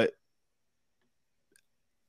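Near silence after a man's last spoken word, broken by one faint click about a second and a half in.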